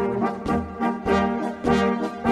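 Bavarian-Bohemian brass band music: trumpets, clarinet and tuba playing together, the full band coming in at once right at the start after a short lull, with a bouncing beat of about two accents a second.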